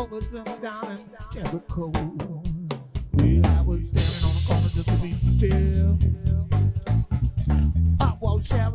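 Live blues-funk trio: electric guitar playing sparse, bending notes, then about three seconds in the bass guitar and drum kit come in loud together, with a cymbal crash about a second later.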